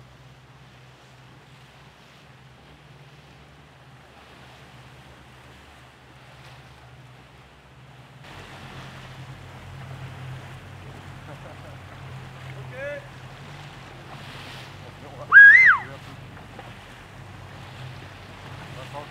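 A boat engine drones steadily with water and wind noise, growing louder about eight seconds in. Near the end come a brief shout and then a loud, high whistle-like call that rises and falls.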